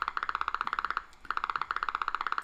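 Electromyograph loudspeaker giving out the firing of a single-fibre potential from the frontalis muscle: a fast, even train of sharp pops, the regular firing of one voluntarily activated motor unit, with a short break about a second in.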